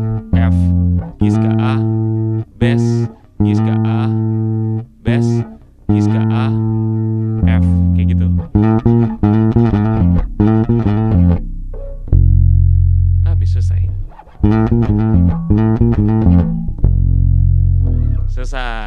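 Pedulla MVP5 five-string electric bass playing a line of plucked notes, each starting sharply and ringing out for half a second to a second. From about halfway the notes come quicker, with one long low note held about two thirds in, then another quick run near the end.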